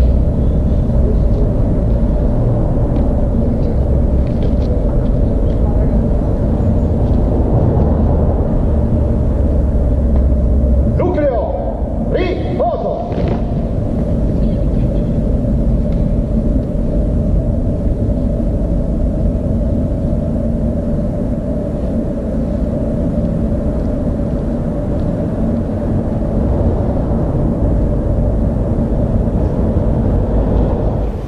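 A large group of voices singing together in unison over a heavy low rumble, sustained for the whole stretch with a short dip about eleven seconds in.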